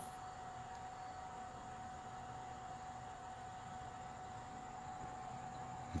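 Quiet room tone: low steady hiss with a faint, unchanging high hum running under it, and no distinct event.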